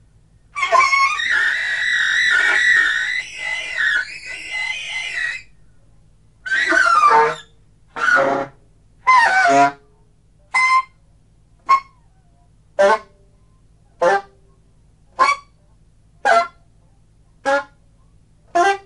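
Alto saxophone playing solo free improvisation: a long, wavering high note for about five seconds, then a run of short blasts about once a second, the first few sliding down in pitch, with gaps between.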